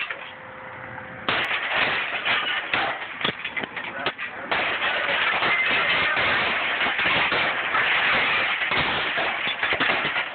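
Broken plate glass being knocked out of a storefront window frame: repeated sharp cracks and the clatter and tinkle of falling shards, starting abruptly about a second in and thickening into a steady clatter from about the middle on, with voices underneath.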